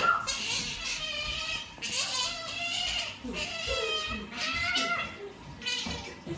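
Pet Asian small-clawed otter giving a series of high-pitched, wavering squeaks, several calls with short gaps between them.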